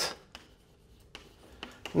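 Chalk writing on a blackboard: a few short taps and scratches as the letters are stroked out.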